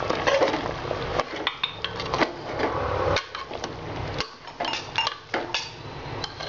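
Steel spoon stirring thick mutton curry in an aluminium pot, with irregular clinks and scrapes of metal on the pot's side over a low steady hum.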